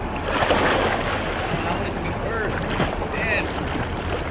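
Water splashing as a swimmer pushes off and swims with kicking strokes, loudest in the first second.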